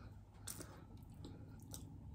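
Near-quiet room with a faint steady low hum and a soft click about half a second in.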